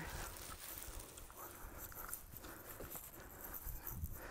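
Faint outdoor background with a low rumble and a few soft, irregular steps on pavement as a person walks while holding a phone.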